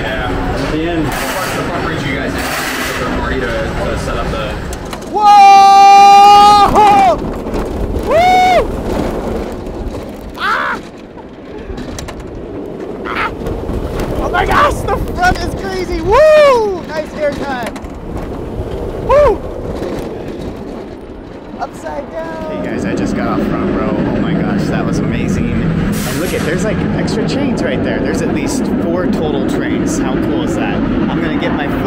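Roller coaster riders screaming and whooping: one long, loud scream about five seconds in, then several shorter rising-and-falling whoops over the next dozen seconds, with a steady rush of noise toward the end.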